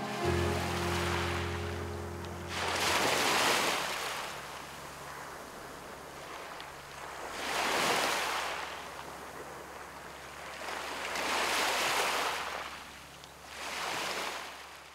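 Small waves breaking and washing up onto a pebble beach, four surges that each swell and fall away. Soft held music notes fade out in the first few seconds.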